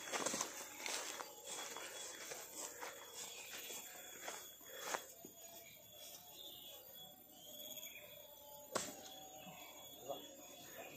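A golf club striking the ball on a fairway shot: one sharp click about nine seconds in, over faint background with steady high thin tones.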